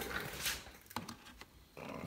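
Rustling handling noise of a hand working against the motorcycle's plastic fairing, with a single sharp click about a second in, as the sidelight bulb holder is worked out of the headlight.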